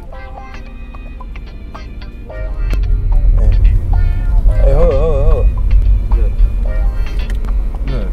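Soundtrack music with a heavy bass that comes in much louder about two seconds in. A wavering held note, sung or synthesised, sounds near the middle.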